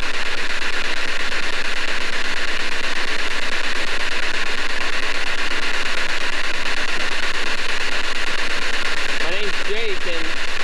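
P-SB7 spirit box sweeping rapidly through radio frequencies, played through a portable speaker: a steady hiss of static chopped into a fast, even flutter, with only scraps of broadcast sound.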